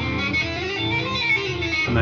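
Electric guitar sounded by the fretting hand alone: a run of legato hammer-on notes up frets five to eight, with smooth note onsets and no picking.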